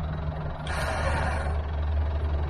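The Land Rover Discovery 1's 300Tdi four-cylinder turbo-diesel engine running steadily, getting a little louder from about half a second in. A short rushing noise comes over it about a second in and lasts under a second.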